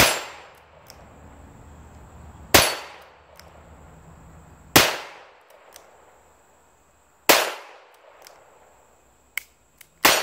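Smith & Wesson 317 .22 LR revolver firing Winchester Super X rounds: four shots about two and a half seconds apart, with a fifth right at the end, each trailing off in a short echo. A short sharp click sounds just before the last shot.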